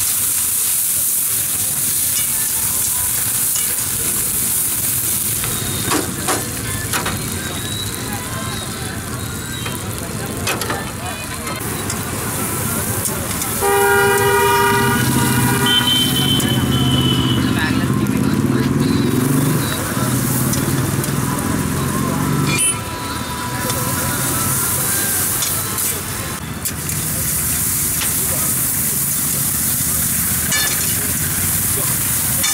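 Vegetables sizzling in a wok over a gas burner as they are stir-fried, with occasional clanks of the ladle on the pan. A vehicle horn honks about halfway through.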